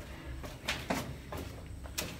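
Footsteps on stone stairs: a few soft, irregular taps and scuffs over a low rumble.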